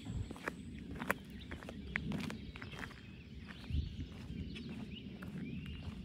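A person's footsteps on asphalt: irregular light scuffs and clicks over low outdoor background noise.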